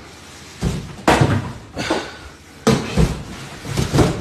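Cardboard boxes being shoved and knocked about on a tiled floor: about six irregular bumps and knocks with scraping between them.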